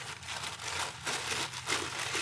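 Plastic mailer bags crinkling as they are pulled open by hand, an uneven rustle with a few sharper crackles.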